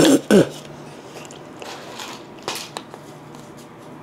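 A man sighs and clears his throat, then bites on dry uncooked macaroni, with a couple of faint short crunches.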